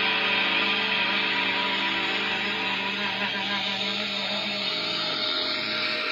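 Closing bars of a metal backing track: a sustained electric guitar chord ringing out, its low note dropping away about five seconds in.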